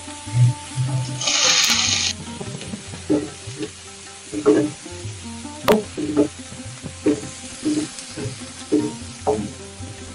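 Sliced onions hit hot oil in a nonstick pan and sizzle loudly for about a second, then a wooden spatula stirs them, knocking and scraping against the pan roughly once or twice a second while they fry. Background music plays throughout.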